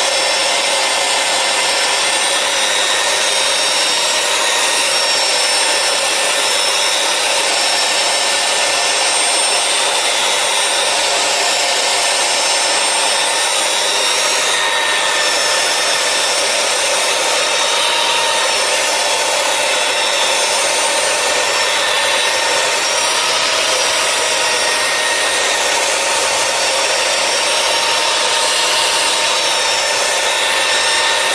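Electric rotary polisher running steadily, its pad working over a floor tile to polish out scratches. An even motor whine with several steady tones over a rubbing hiss, unchanging throughout.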